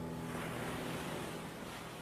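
Steady wash of ocean surf, slowly fading, with the last note of a song dying away in the first moment.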